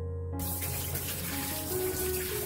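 A kitchen tap sprays water onto quinces in a stainless steel sink: a steady rush of splashing water that starts suddenly about a third of a second in. Soft piano music plays under it.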